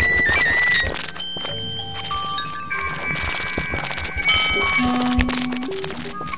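Experimental electronic music: held electronic tones at many different pitches start and stop over a soft crackle of clicks.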